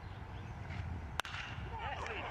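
A metal baseball bat striking a pitched ball: one sharp crack about a second in, the sound of solid contact on a hit, over faint stadium background noise.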